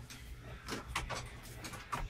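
A few light, separate knocks and clicks as the camper's sling bunk and its metal hooks are handled while being put back up.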